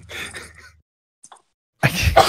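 Laughter over an online voice call. A faint laugh trails off and cuts to dead silence, there is a short click, and loud laughter breaks in near the end.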